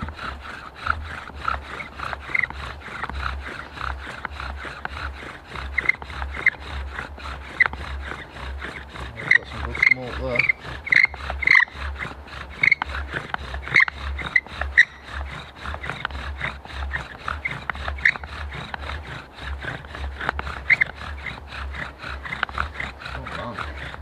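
Bow drill worked fast under heavier pressure: the wooden spindle rubs in the hearth board with a quick, rhythmic back-and-forth, squeaking on the strokes. The friction is heating the hearth and starting to make smoke on the way to an ember.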